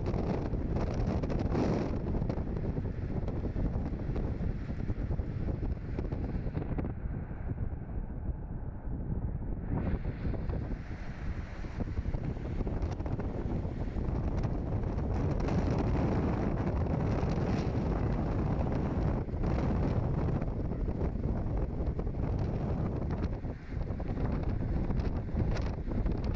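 Wind rushing over the microphone with the steady road and engine noise of a car driving along a highway. The upper hiss falls away for a few seconds about seven seconds in.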